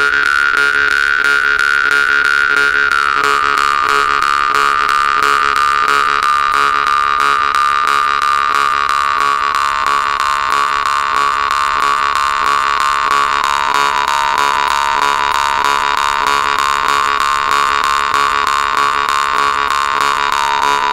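Volgutov "Vedun" temir-khomus (Yakut jaw harp) played with rapid, even strumming: a continuous buzzing drone with a bright overtone held high at first, then slowly sinking lower.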